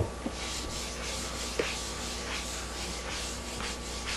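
A whiteboard eraser wiped back and forth across a whiteboard, a rubbing hiss rising and falling with each stroke, about two or three strokes a second.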